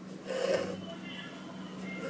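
Embroidery floss being drawn through fabric stretched taut in an embroidery hoop: a soft rubbing rasp about half a second in, over a steady low hum.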